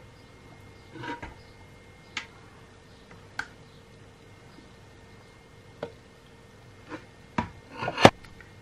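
Thick soap batter poured from a stainless steel pot into plastic measuring jugs: a quiet pour broken by a few light clicks and knocks of the pot and plastic jugs being handled, with a sharper knock at the very end.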